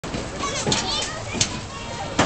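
Many voices, children's among them, shouting and calling over one another, with a short sharp crack about one and a half seconds in.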